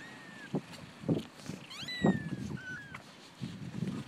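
Young kittens mewing: several thin, high-pitched mews, one just at the start and a cluster of them about two seconds in, over soft rustling and bumps from the blanket.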